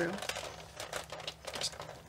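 Big Shot die-cutting machine being hand-cranked, rolling a precision base plate, cardstock and thin metal die through its rollers: irregular crackling clicks as the plates are squeezed.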